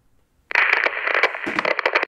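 Crackling TV-static noise, like an untuned radio or television, starting suddenly about half a second in.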